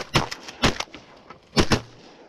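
A quick volley of shotgun blasts from two hunters firing together, about five shots in two seconds, with a close pair near the end. One of the guns is a Stoeger M3500 12-gauge semi-automatic.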